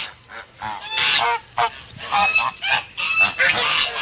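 A flock of white domestic geese honking, with many short calls overlapping one another from about half a second in.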